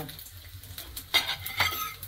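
Bacon sizzling in a frying pan, with a utensil scraping and clinking against the pan twice in the second half.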